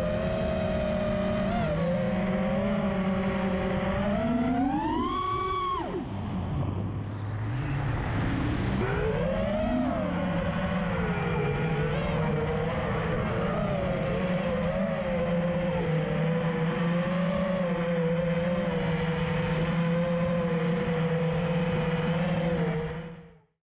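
Small electric motors of a camera-carrying quadcopter whining, their pitch rising with throttle about five seconds in, dropping low for a moment, then climbing again and holding steady.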